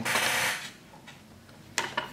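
Small fly-tying tools and materials handled at the vise: a short rustle that stops within the first second, then two sharp clicks near the end.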